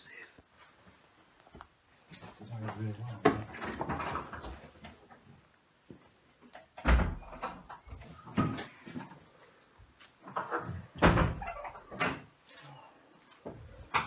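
A few sharp knocks and thuds of kitchen cupboard doors and clutter being handled, the loudest about seven and eleven seconds in, with low muttered speech in between.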